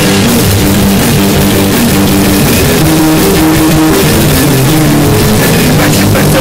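Punk rock band playing an instrumental stretch without vocals: electric guitar chords and a drum kit, loud and steady.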